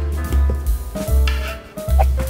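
Background music with drums and a bass line that repeats about twice a second.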